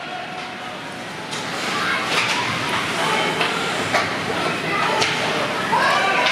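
Ice hockey rink sound during play: skates scraping the ice and sharp clacks of sticks on the puck, under the voices of spectators calling out. The crowd noise swells from about a second and a half in.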